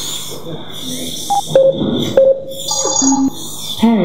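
Sci-fi computer console beeps: a handful of short electronic tones at different pitches, spaced about half a second apart, with a lower tone near the end.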